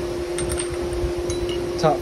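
A couple of light metal clinks about half a second in as the steel top jaw of a fixture vise is set onto its base, over a steady low hum.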